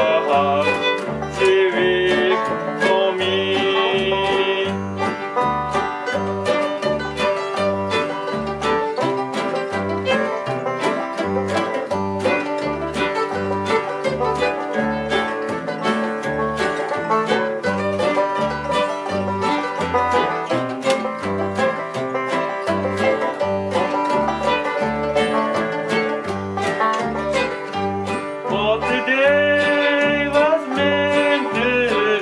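Acoustic bluegrass band of banjo, mandolin, fiddle, acoustic guitar and upright bass playing an instrumental break over a steady bass pulse, with the banjo picking to the fore. Singing comes back in near the end.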